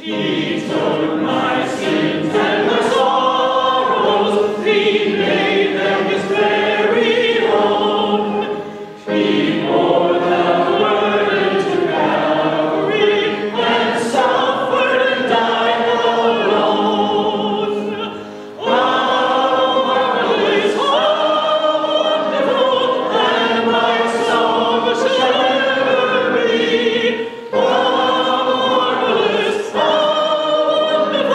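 Church congregation singing a hymn together, led by a woman song leader. The singing pauses briefly between lines, about every nine seconds.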